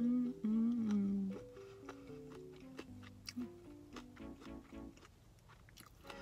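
A woman's closed-mouth 'mmm' hum while chewing, loudest in the first second and a half. After that come quieter light background music with a stepwise melody and small wet chewing clicks.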